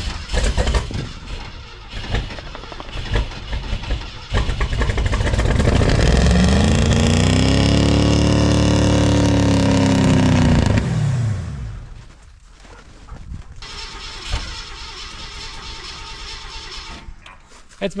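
1964 Ford Thunderbird's V8 being started cold after long storage: a few seconds of cranking, then it catches about four seconds in and is revved up and back down. It settles to a quieter steady idle from about twelve seconds.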